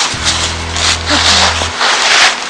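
A hoof rasp scraping across a horse's hind hoof wall during a barefoot trim: a run of rough strokes, about two a second.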